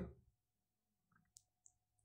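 Near silence: quiet room tone with a faint steady hum and a few faint small clicks in the second half.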